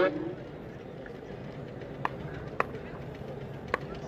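A man's voice trails off at the start, then steady background noise of an outdoor cricket ground. A few sharp clicks come about two, two and a half and nearly four seconds in.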